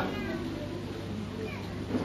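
Quiet pause in speech: low room tone with a steady low hum, and a couple of faint, short pitched sounds.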